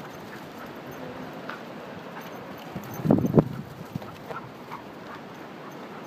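Dogs at play: one dog gives two short, loud barks just after halfway, with a few faint scattered taps around them.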